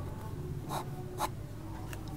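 Pen writing on notebook paper: three short scratchy strokes as a number is finished and underlined twice.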